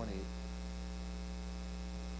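Steady low electrical mains hum.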